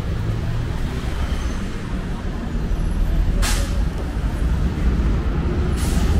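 Street traffic with a city bus's engine rumbling close by, and a short, sharp hiss of bus air brakes about three and a half seconds in, then another near the end.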